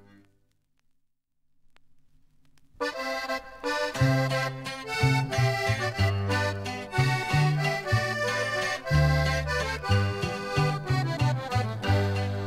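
The last notes of a song die away into about two seconds of near silence, the gap between tracks on a record. About three seconds in, the next norteño song starts with an instrumental intro: accordion lead over steady bass notes, with no singing yet.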